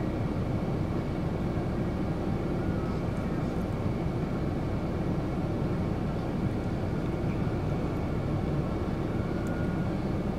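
Steady low rumble of wind buffeting the microphone during snowfall, holding an even level throughout.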